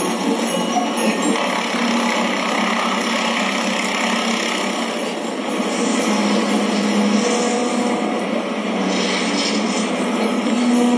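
Soundtrack of a projected table animation played over room speakers: music under a steady, noisy vehicle-like sound effect, with a few held tones through it.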